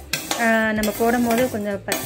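A voice singing a held, wavering melody over the scrape and rattle of a perforated steel spatula stirring dry pulses as they dry-roast in a steel kadai. The singing is the loudest sound.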